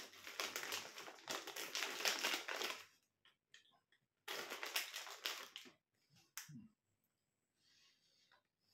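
Crunchy pork scratchings crackling and crunching: a dense crackly burst of about three seconds, then a shorter burst just after four seconds in, as a scratching is put in the mouth and bitten.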